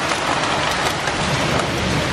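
Heavy downpour of rain mixed with hail: a loud, dense, steady hiss of falling ice and water.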